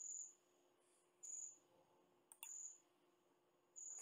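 Near silence broken by four short, faint high-pitched beeps spaced about a second or more apart, with a single click just before the third.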